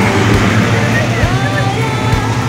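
Classic car's engine running with a steady low rumble as it creeps slowly past, under voices and music.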